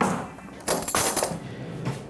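Metal cutlery clinking and rattling in a kitchen drawer as a teaspoon is taken out: a clatter at the start and a second, brighter rattle about a second in.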